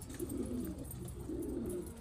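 Racing pigeons cooing: two low coos, the second about a second after the first.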